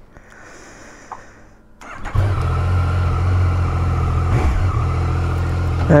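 Yamaha Tracer 900 GT's three-cylinder engine idling steadily, heard close up from the bike. It comes in suddenly about two seconds in after a faint hiss.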